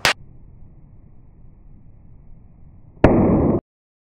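A sharp bang as something strikes the pavement, then about three seconds later a louder noisy blast lasting about half a second that cuts off abruptly.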